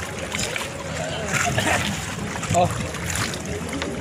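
Seawater splashing and lapping around swimmers and a bamboo raft, with people's voices calling out over it.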